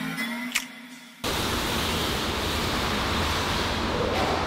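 Soft background music, cut off about a second in by an abrupt, steady hiss of noise that holds evenly to the end.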